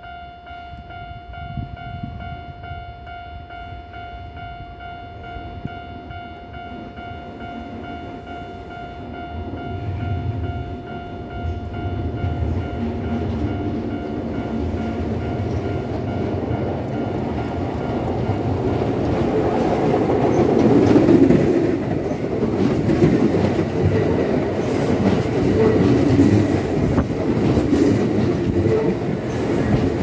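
Level crossing warning bell ringing with a steady pitched tone, drowned out after about ten seconds by the growing rumble of an approaching Kintetsu 8600 series electric train. The train then passes close by, its wheels clattering over the rail joints.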